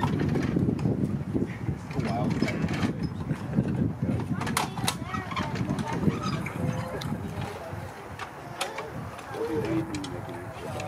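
Indistinct, muffled voices talking, with a few sharp clicks about halfway through.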